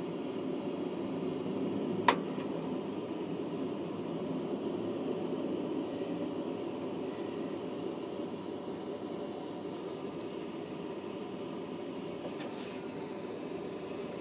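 Steady rumble of a passenger train carriage heard from inside as the train rolls along, easing slightly in the second half. A single sharp click sounds about two seconds in.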